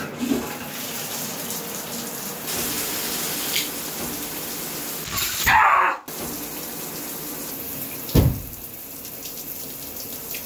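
A shower runs with a steady hiss of spray, starting as the valve is turned on. About five seconds in there is a loud, short scream that is cut off, and near eight seconds a low thump.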